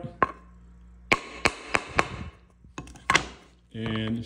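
Steel claw hammer tapping a headless nail into a pine board: a single tap, then four quick light taps about a second in, and a few more near the end.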